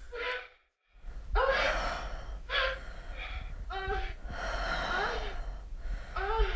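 A woman's breathy moans and gasps of pleasure, one after another, following a brief moment of dead silence near the start.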